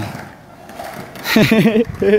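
After a lull of low steady noise, a person's voice comes in about one and a half seconds in with a short vocal sound that swoops in pitch.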